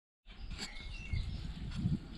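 Outdoor background noise: a steady low rumble with a few faint, brief bird chirps about a second in.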